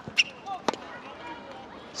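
A tennis racket striking the ball on a flat serve, heard as a sharp pop, followed about half a second later by a second sharp knock.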